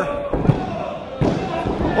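Referee's hand slapping the wrestling ring mat twice for a pinfall count, the slaps under a second apart; the pin is broken at the count of two.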